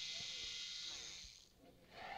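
Electric razor buzzing faintly with a thin, high hiss, then switched off about one and a half seconds in.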